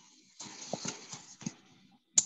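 Hiss from a participant's open microphone over a video call, with several soft knocks and clicks.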